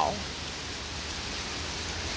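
Heavy rain pouring down steadily, an even hiss.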